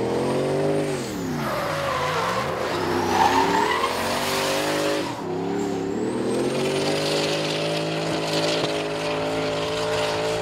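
Drift car's engine revving hard while its rear tyres screech and smoke in a long sideways slide. About a second in the revs fall away sharply and climb back by about three seconds; after a brief break near five seconds the engine holds high, steady revs to keep the tyres spinning.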